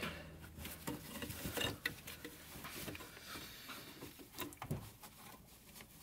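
Gloved hands working at parts under a car: faint, scattered clicks, taps and scrapes of metal and plastic being handled.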